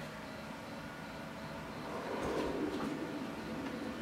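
Opening of a Dolby test trailer's soundtrack, a faint low swell building from about two seconds in, played through a home-theatre receiver's speakers in a small room.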